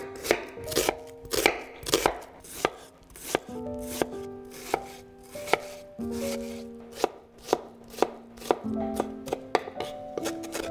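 Chef's knife chopping a red onion on a wooden cutting board: crisp knife strikes on the board, about two a second, coming faster near the end.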